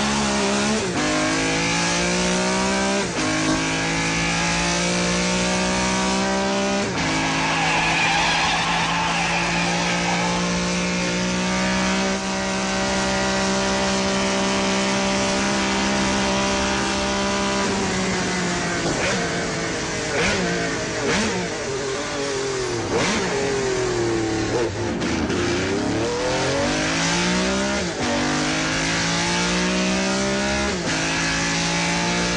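A sports car's engine driven hard, revving up through the gears with the pitch dropping at each shift. It then holds high revs steadily for several seconds. About two-thirds of the way through it slows, with falling revs and quick rises and drops, then accelerates again near the end.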